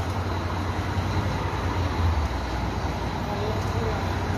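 Scania K420 coach's diesel engine idling steadily, a constant low rumble.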